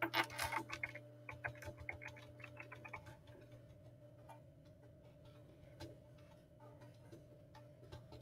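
Faint computer keyboard typing: a quick run of keystrokes for about three seconds, then slower, scattered keystrokes.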